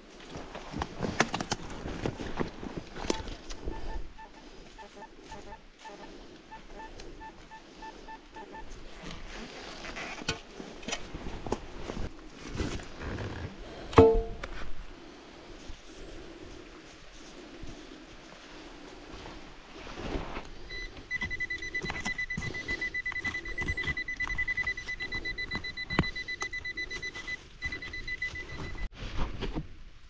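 Digging in forest soil with scrapes and clicks throughout, and a metal detector's pulsing beep a few seconds in. A single sharp metallic strike about 14 s in. Over most of the last nine seconds, a pinpointer sounds one steady high tone while held on a metal target under tree roots.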